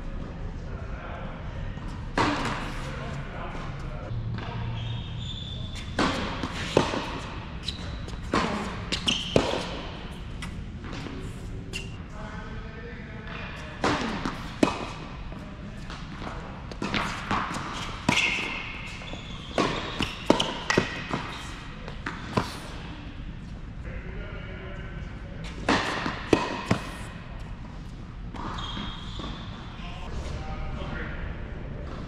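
Tennis balls struck by rackets and bouncing on an indoor hard court in rallies, a run of sharp hits and bounces that echo in a large hall.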